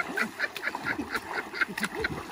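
Rapid series of short quacking calls, about five a second, over the splashing of people wading through a pool.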